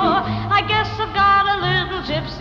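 Up-tempo 1940s popular-song orchestral passage between sung lines: a melody with a wide vibrato over a bass alternating between two notes.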